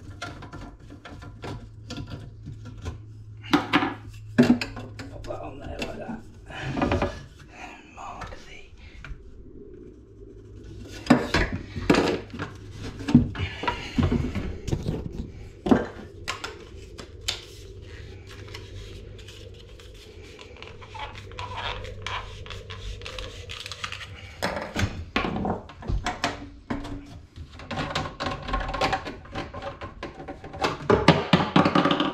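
Plastic waste pipe and fittings being handled and fitted inside a vanity unit cabinet: irregular clicks, knocks and plastic clatter, over a steady low hum.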